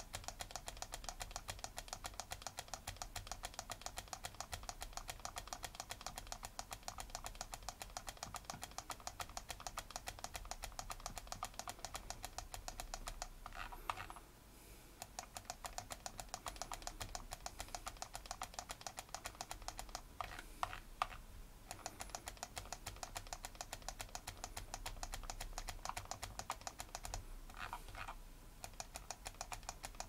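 Quiet, rapid and very even clicking, several clicks a second, with three short breaks.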